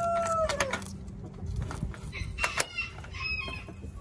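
A rooster crowing: the long held note of its crow trails off and drops in pitch under a second in. A few short, higher chicken calls follow near the middle and later on.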